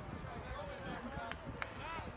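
Indistinct chatter of several people talking among spectators, with two short sharp clicks near the end.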